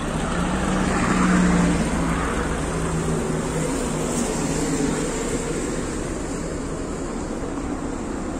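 A vehicle engine running steadily over outdoor road noise, its low hum swelling about a second in and slowly fading.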